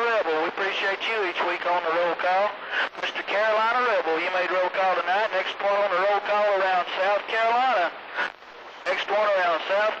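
A man's voice received over an AM CB radio, strong on the signal meter but not made out into words, with a short drop-out about eight seconds in.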